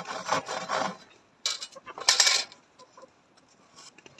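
A hand saw rasps through a small log in a few last strokes, stopping about a second in. Then come two short, sharp metallic clatters about a second and a half and two seconds in, as the saw blade is put down on concrete.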